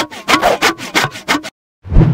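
Logo sting sound effect: quick, even scratching strokes, about six a second, that stop short about three-quarters of the way in, followed by a sudden low thump at the very end.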